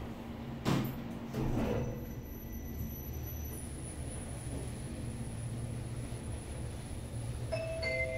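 Subway station passenger elevator: the doors shut with a knock about a second in, then the car travels upward with a steady low hum and a faint high whine. Near the end a two-tone arrival chime sounds as the car reaches the next floor.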